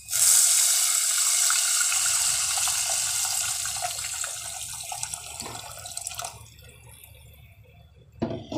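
A glass of water poured into a hot clay handi of frying oil, garlic and spices, the splashing stream starting suddenly and fading away over about six seconds.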